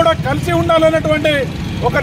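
A man's voice speaking forcefully to the camera, over a steady low rumble.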